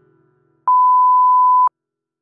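Music fades out, then a single loud, steady electronic beep, one pure tone about a second long, that starts and cuts off suddenly.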